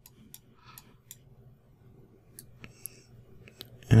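Light, scattered computer mouse clicks, about ten of them at uneven intervals, over a faint low hum.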